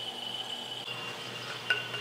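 Faint steady high-pitched whine over a low hum from a magnetic-levitation ornament's electromagnet coil, driven through a MOSFET as it holds the ornament up.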